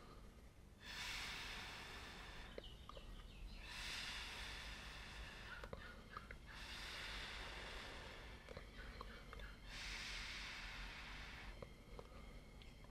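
Air blown through a drinking straw onto wet acrylic paint to spread a fluid-art pour: four long, faint breathy blows of about two seconds each, with short pauses between.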